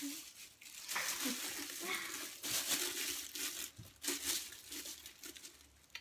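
Paper or plastic wrapping crinkling and rustling in irregular spells as a chocolate is taken out and unwrapped by hand.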